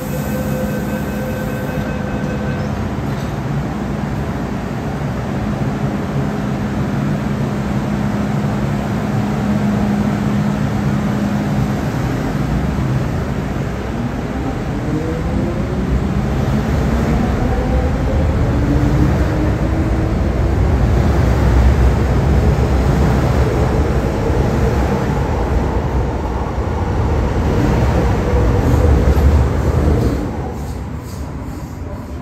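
MTR M-train electric multiple unit pulling away from a platform: a steady hum at first, then rising whines from the traction motors as it picks up speed about halfway through, followed by heavy rumbling of wheels on rails that grows louder near the end.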